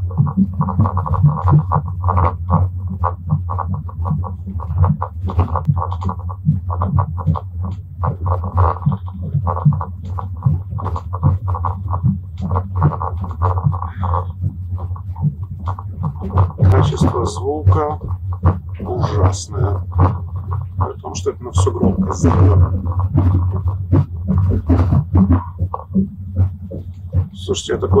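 A song with a beat and vocals, played through a phone's small loudspeaker, over the steady low hum of the moving train.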